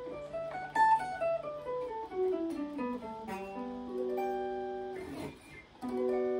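Guitar played as single plucked notes running through the D pentatonic scale: a step-by-step run falling in pitch over about three seconds, then notes left to ring together, with a short gap near the end before another note.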